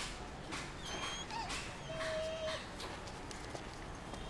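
A dog whimpering: a few short, thin whines around a second in, then one longer steady whine at about two seconds, over faint background noise with soft scattered clicks.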